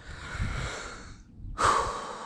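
A man breathing out heavily twice, long sigh-like exhales, the second louder and starting about a second and a half in: sighs of excitement and relief.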